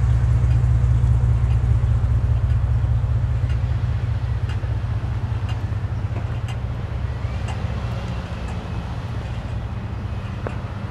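A vehicle engine idling, a steady low hum that grows gradually fainter, with faint footsteps about once a second.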